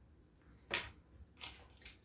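Faint handling noise: one short click about three-quarters of a second in, then a couple of fainter ticks, as small nail-art items and a glue applicator are handled.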